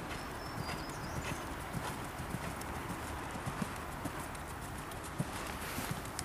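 Hoofbeats of a Westphalian mare cantering on a sand arena, scattered soft thuds over a steady background hiss.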